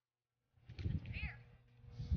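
A short, high-pitched call with a wavering, arching pitch about a second in, over low, uneven rumbling noise that starts about half a second in.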